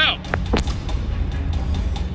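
Low, steady road rumble inside a moving car, with two short, sharp knocks about a third and half a second in.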